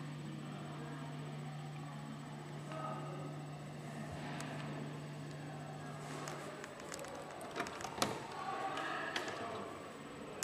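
Faint room ambience: a steady low hum that stops about two-thirds of the way through, with faint indistinct murmuring and a few sharp clicks near the end.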